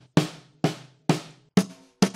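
Sampled acoustic snare drum hits from Logic Pro's Sampler, playing a steady beat of about two strikes a second as replacement snare samples are auditioned. About one and a half seconds in, the next sample takes over and the hits carry a clearer ringing tone.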